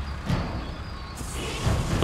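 Heavy machinery sound effects: a low rumble, with a rushing hiss that comes in just over a second in.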